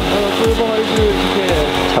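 Edited background music: held chords and a melody over a steady beat of low kick-drum thumps, about two a second.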